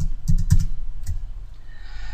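Computer keyboard keys clicking about six times in quick succession within the first second or so, typical of Alt+Tab being pressed repeatedly to switch between open programs.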